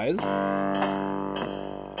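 Artiphon Orba playing back its recorded loop: a held, plucked-sounding synth bass note that slowly fades. Two light percussive ticks come about a second in and again shortly after.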